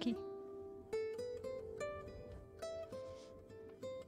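Soft background music: a plucked-string melody of single notes, one starting about every half second, each ringing and fading.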